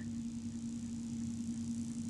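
A pause between spoken verses: a steady low electrical hum with an even background hiss.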